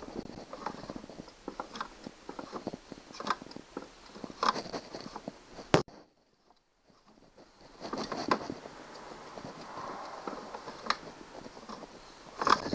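Hard plastic knocks, clicks and rubbing as hands handle the seat and body parts of a ride-on toy vehicle. A single sharp, loud click comes a little before halfway, then a moment of near silence before the handling noise resumes.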